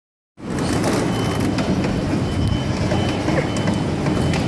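A coin-operated kiddie train ride running on its circular track, a steady low rumble from its wheels and motor with scattered clicks, and a thin high electronic tone sounding on and off. It starts abruptly just after the beginning.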